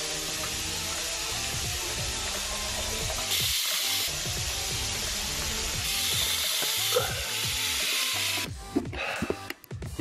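Background music over the scrubbing of a toothbrush and a tap running into a bathroom sink, heard as a steady hissing wash. The mix shifts abruptly a couple of times and thins out in choppy breaks near the end.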